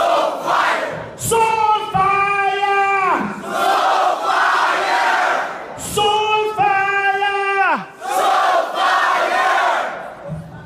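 Call and response: a singer on the microphone holds a long note that slides down at the end, and the crowd shouts it back. This happens twice.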